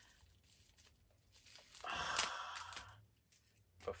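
Plastic wrapping crinkling and tearing as it is pulled off a toy, one burst of about a second near the middle.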